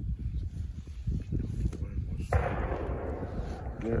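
A distant gunshot about halfway through, its report rolling away and fading over a second and a half. It sounds like a small shotgun fired with a game load.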